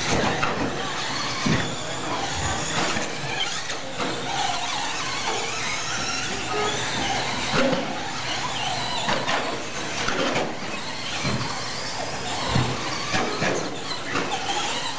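1/10-scale 2WD short course RC trucks racing on a dirt track: a dense mix of motor whine rising and falling with throttle and tyres on the dirt, broken by scattered short knocks from landings and bumps.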